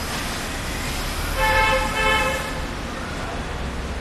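Steady street traffic noise, with a vehicle horn sounding briefly about a second and a half in.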